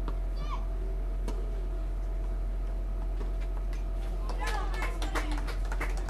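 Two sharp tennis-ball strikes by racket, about a second apart, over a steady low hum. In the last couple of seconds come voices and a quick run of sharp clicks.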